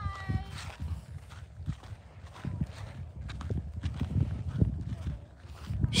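Low wind rumble on the microphone with scattered soft, irregular thumps. A short spoken "hi" comes at the very start.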